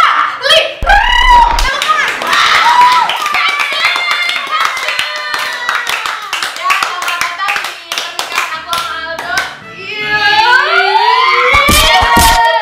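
Several people clapping their hands in quick, uneven claps, mixed with laughter and excited voices that rise in pitch near the end.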